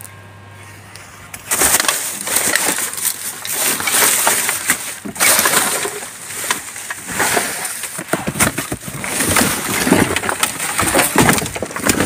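Plastic bin bags and cardboard rustling and crackling as rubbish is rummaged through by hand inside a bin, starting about a second and a half in and going on busily after that.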